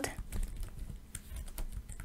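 Typing on a computer keyboard: a run of faint, irregular key clicks.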